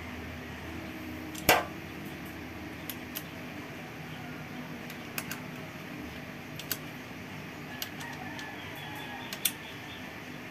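Metal clicks of a 10 mm box wrench on the cylinder head cover bolts of a pushrod motorcycle engine as they are slowly tightened: one sharp click about a second and a half in, then lighter clicks every second or two.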